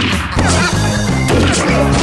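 Background music with a steady bass line, cut by a loud crash-like hit right at the start and another about a second and a half in.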